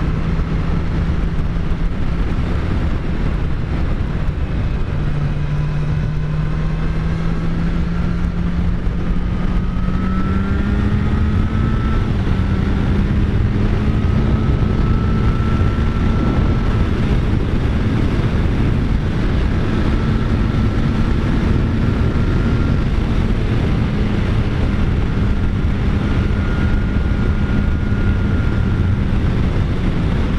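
Kawasaki Z900's inline-four engine running under way, its pitch climbing over the first ten seconds or so and then holding steady, under a heavy rush of wind on the rider's camera microphone.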